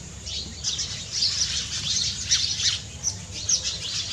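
Small birds chirping: many quick, high-pitched calls overlapping without a break, over a low steady background rumble.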